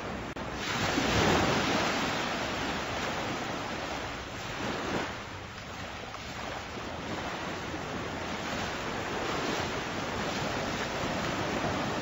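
Ocean surf washing in, swelling and fading in slow waves every few seconds, loudest about a second in.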